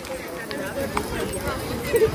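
Indistinct voices of children and adults talking in the street, with a couple of sharp taps about half a second and a second in, like footsteps on pavement.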